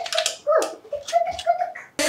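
A small child's voice making a series of short, high-pitched whimpering sounds.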